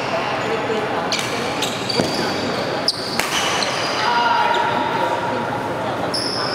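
Badminton rally: racket strikes on the shuttlecock and short high squeaks of court shoes on the mat, echoing in a large hall. The strikes come several times in the first three seconds or so, and a longer squeak-like tone follows about four seconds in.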